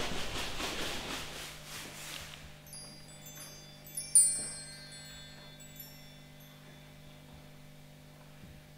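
Scattered high, bell-like chime tones tinkling, with one loudest strike about four seconds in, over a steady low hum. A pulsing hiss fades out in the first two seconds.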